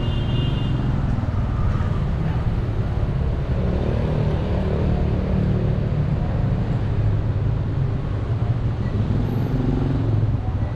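Road traffic on a town street: car engines running and passing, heard as a steady, continuous rumble.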